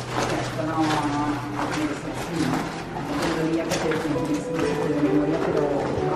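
Indistinct voices without clear words over a steady low drone, from a museum exhibit's sound installation, with short sharp sounds scattered through.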